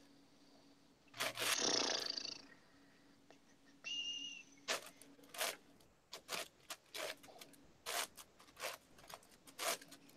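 Moyu 15x15 puzzle cube being turned by hand: a string of short plastic clicks and clacks of layer turns, about two or three a second in the second half. A short rush of noise comes about a second in, and a brief high tone just before four seconds.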